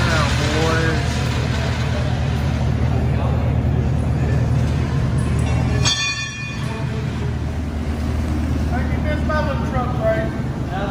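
Chevrolet Camaro SS's LT1 V8 idling steadily with a low rumble. About six seconds in it gives way to general tire-shop noise with a brief high whir, and voices talk in the background.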